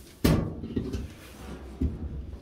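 Handling noise while getting into place behind a washing machine: a sharp knock about a quarter second in, then softer bumps and scraping, and another thump near the end.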